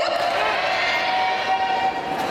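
A person's long drawn-out shout, held on one steady pitch for nearly two seconds after rising into it, as in a martial-arts kiai or called command during a sword drill.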